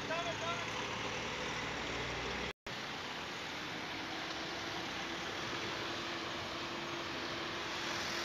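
Street traffic: cars moving slowly past at close range. A steady engine hum joins about four seconds in, and the sound cuts out for a moment about two and a half seconds in.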